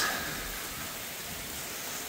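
Steady rain falling, an even hiss with no distinct events.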